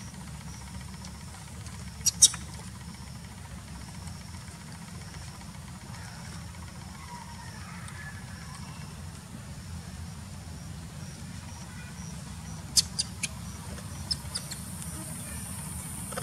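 Outdoor background: a steady low rumble with a faint, broken high chirping, cut by sharp clicks, two of them about two seconds in and a quick run of four or five near the end. A high hiss comes in just before the end.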